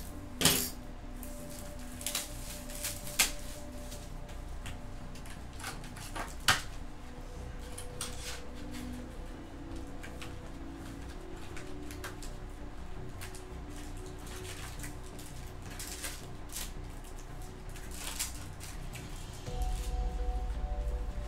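Hands handling a cardboard trading card box and foil-wrapped card packs: scattered taps, knocks and crinkles, the sharpest knocks in the first seven seconds, over faint background music.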